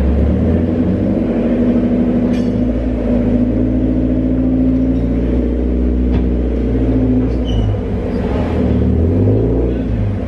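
Mazda Miata's engine idling steadily with its exhaust close by. Near the end the engine note shifts as the car is driven forward off the alignment rack.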